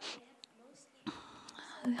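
A short pause in a woman's speech: a phrase ends, then near silence, then a soft breath from about a second in before speaking resumes near the end.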